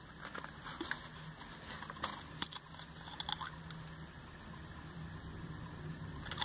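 Faint handling of a plastic bottle: a few scattered soft clicks and taps over a low steady hum.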